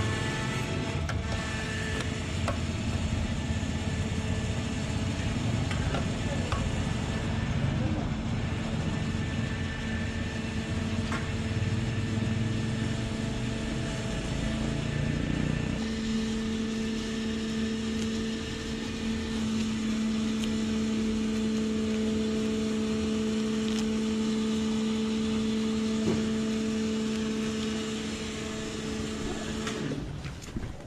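A steady motor hum with a low rumble underneath. About halfway through the rumble drops away, leaving a clearer steady hum to the end.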